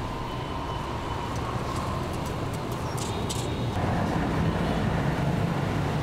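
Street traffic with motorbike and car engines passing steadily. A low engine hum grows louder about four seconds in.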